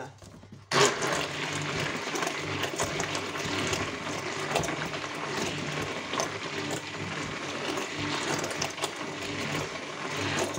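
A hand-held stick blender switches on about three-quarters of a second in and runs steadily, whirring and churning through liquid homemade soap batter of lard, sunflower oil and lye as liquid fabric softener is blended in.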